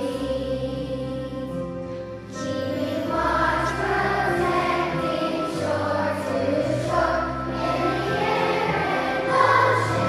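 Children's choir singing with instrumental accompaniment; the accompaniment plays alone at first and the voices come in a little over two seconds in.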